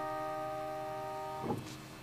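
A minor triad held on the piano, its notes ringing steadily and slowly fading. They stop with a short soft knock as the keys are let go about a second and a half in.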